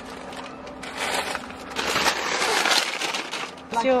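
Paper takeaway bags rustling and crinkling as they are handled, in uneven bursts over a couple of seconds, with a short word near the end.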